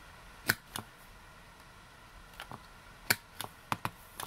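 Handheld corner-rounder punch snapping sharply as it cuts the corners off a cardstock-backed paper postcard, two loud snaps about half a second and three seconds in, with lighter clicks and taps between and near the end as the punch is handled and set down.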